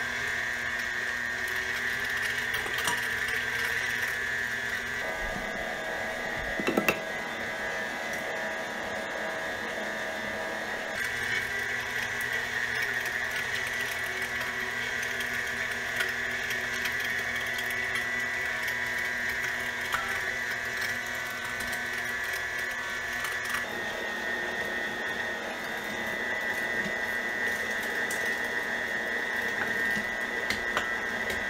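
KitchenAid Heavy Duty stand mixer driving its meat-grinder attachment, a steady, loud, high-pitched motor whine as it grinds chunks of venison and pork. The tone shifts slightly a few times as meat is fed through, and there is a brief sharp knock about seven seconds in.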